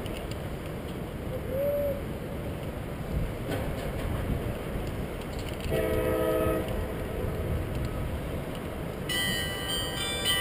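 Wind rumbling on the camera's microphone high up on the outside of a building. A short chord of horn-like tones sounds about six seconds in, and a cluster of high ringing tones starts near the end.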